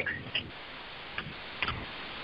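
A pause on a recorded phone call: steady line hiss with a few faint clicks.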